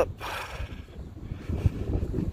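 Wind buffeting the phone's microphone outdoors: an uneven low rumble, with a short breathy hiss just after the start.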